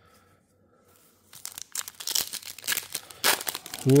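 Foil wrapper of a 2024 Topps Pro Debut trading-card pack being torn open and crinkled, a run of sharp crackles starting about a second in.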